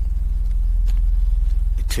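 A loud, steady low droning hum with a fast, even pulse to it.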